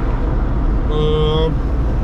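Steady engine and road rumble inside the cabin of a moving Zastava Yugo. About a second in, a man makes a drawn-out, level hesitation sound lasting about half a second.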